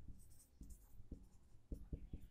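Marker pen writing on a whiteboard, faint, with a few light ticks and strokes as letters are formed.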